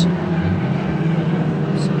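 Engines of a pack of 1300cc stock cars racing round the track together, heard as a steady low hum.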